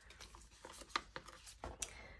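Scissors snipping through a small piece of paper: several faint, short snips spread through the moment.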